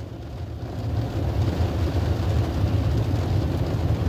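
Low, steady vehicle rumble heard from inside a car cabin, swelling over about the first second and then holding.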